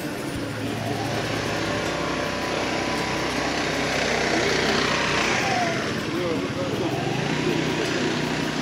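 Busy pedestrian street with people talking around, and a motor scooter going past, loudest about halfway through and falling in pitch as it goes by.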